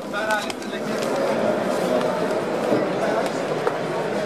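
Crowd chatter: many people talking at once, with no single voice clear.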